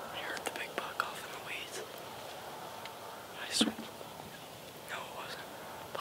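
Hushed whispering in short, scattered phrases, with one brief louder sound a little past halfway through.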